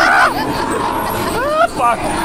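Dark-ride car rumbling steadily along its track, with a high-pitched shriek trailing off at the start and a short shouted exclamation near the end.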